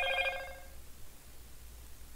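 Electronic message notification tone: a short chime of a few steady pitches that changes note once and stops less than a second in, leaving a low steady hum.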